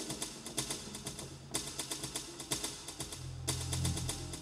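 Live electronic improvisation: a fast, dense rhythm of sharp electronic clicks and ticks over a low synthesizer bass, with a deep bass note coming in loud near the end.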